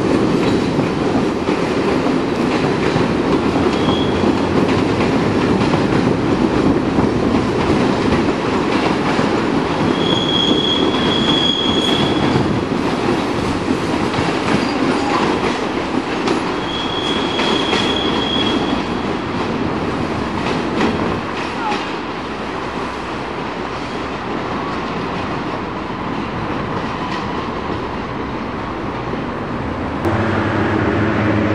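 A train rolling through the station's pointwork: a steady rumble of wheels on rails with faint clicks over the joints. A high wheel squeal comes three times, briefly about four seconds in, then longer around ten and seventeen seconds. The rumble eases a little in the second half.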